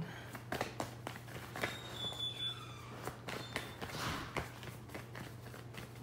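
A deck of oracle cards being shuffled by hand: an irregular run of soft card slaps and clicks, over a steady low hum.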